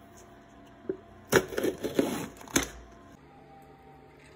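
Packaging of an instant cup noodle being opened: a single tap about a second in, then loud crinkling and tearing for about a second and a half.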